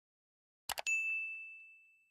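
Subscribe-animation sound effects: a quick double mouse click about 0.7 s in, then a single bright notification-bell ding that rings out and fades over about a second.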